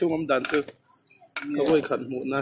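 Light metallic clinks of areca nuts and a hand against the steel compartment dividers of a betel-nut peeling machine, with a sharp click right at the start, over people talking.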